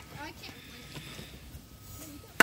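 Faint, distant voices over a low, steady background rumble; no bat or ball contact is heard.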